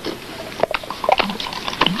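Irregular soft clicks, taps and rustles of small objects being handled at a table, such as a cup, a bottle and food.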